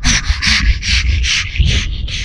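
A man imitating a fighter pilot's anti-G straining breath: a run of quick, forceful breaths, about four a second.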